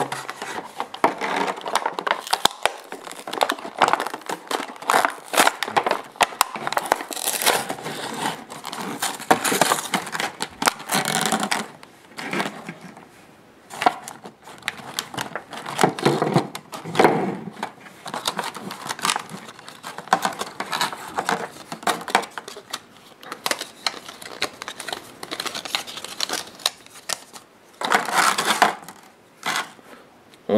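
A toy's blister-card packaging being opened by hand: the stiff clear plastic blister crinkling and crackling and the cardboard backing being pulled and torn, in irregular bouts with short pauses.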